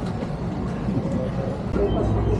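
Outdoor traffic and street ambience with a low rumble and faint voices; about a second and a half in it cuts to a steady low hum inside a boat's cabin.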